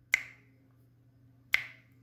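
Two sharp finger snaps about a second and a half apart, keeping the beat for unaccompanied singing.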